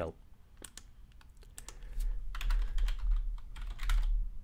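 Typing on a computer keyboard: a few scattered key clicks in the first two seconds, then a quicker run of keystrokes.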